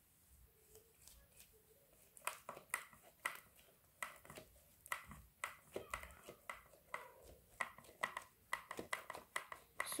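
Gloved fingers pressing and patting damp white plaster mix into a clear plastic mould tray, with faint irregular clicks, taps and rustles of glove and plastic.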